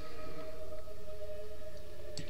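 A steady background hum with a faint held tone over even hiss; no clicks or other events stand out.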